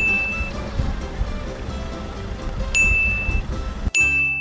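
Background music with a bright, short ding sound effect, heard at the start, again a little under three seconds in and once more at the very end.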